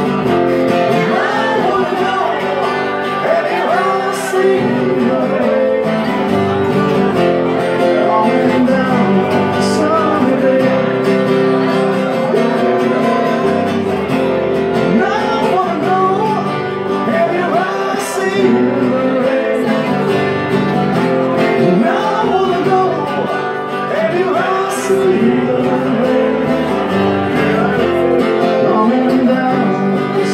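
Live unplugged pub band: acoustic guitars strumming chords while a man sings the melody.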